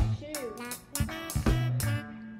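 Background music with a steady beat: an upbeat swing-style tune with guitar, held bass notes and drum hits about every half second.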